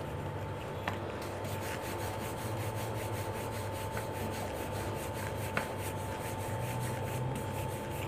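Wooden rolling pin rolling out flour-dusted wheat dough on a round rolling board: a steady rubbing, with two light knocks about a second in and midway through.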